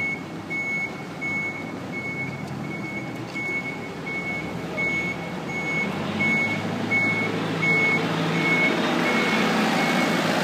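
A vehicle's reversing alarm beeping one steady high tone about every 0.7 s, fading out near the end, while the rumble of a vehicle grows louder over the last few seconds.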